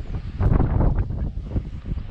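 Wind buffeting the microphone in a low, uneven rumble, with a stronger gust about half a second in.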